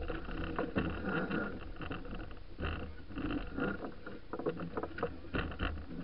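Deck noise aboard a racing sailing yacht under way: a steady rush of wind and water with irregular knocks and clicks as the crew handles lines and gear.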